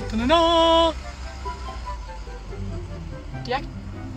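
A short held voice-like note in the first second, gliding up at its start, followed by soft background music.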